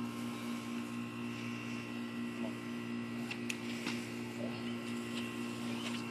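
A steady hum made of several fixed tones, with a couple of faint clicks about three and a half seconds in.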